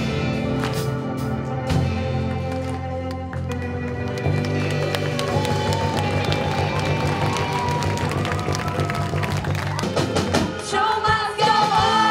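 A live rock band of electric guitars, bass, drums and keyboard playing the instrumental close of a song, with no vocals. About ten to eleven seconds in, the music changes to a different song with singing.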